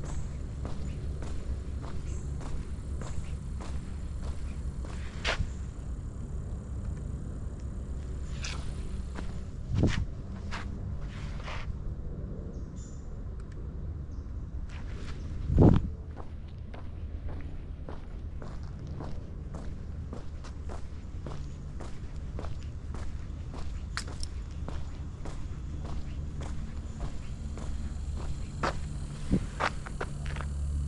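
Footsteps on a paved path at a steady walking pace, over a low, steady rumble. A heavier thump comes about halfway through.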